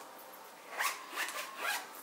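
Zipper of an Erin Condren planner folio being pulled closed in three short strokes around its edge, starting a little under a second in.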